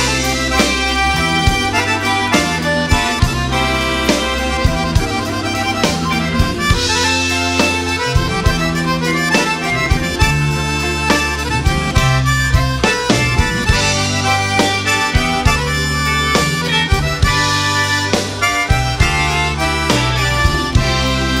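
Cajun band playing an instrumental passage led by a single-row Cajun button accordion, with a drum kit and electric bass underneath and occasional cymbal crashes.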